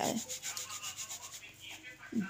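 Flour being sifted through a plastic sieve: a fast, even, scratchy rasping as the sieve is shaken, growing fainter toward the end.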